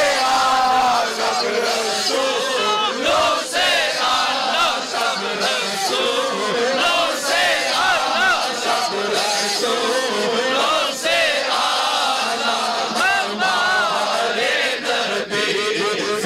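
Large crowd of men chanting and singing together in a devotional chant, many voices overlapping at a loud, steady level.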